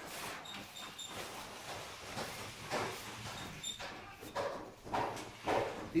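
Faint background noise with soft rustling, and a few brief high-pitched chirps about half a second to a second in and again past the middle.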